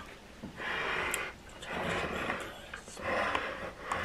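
A person's breathy exhalations, three in a row, each about a second long.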